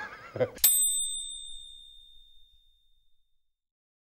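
A single bright bell ding, struck once about half a second in and ringing out as it fades over about two seconds.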